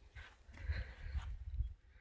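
Faint, uneven low rumble of wind on the microphone, with a soft hiss above it.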